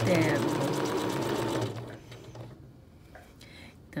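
Domestic sewing machine stitching at speed during free-motion ruler quilting, its needle strokes in a fast even rhythm over a steady motor hum, then stopping a little under two seconds in as the stitched line is finished.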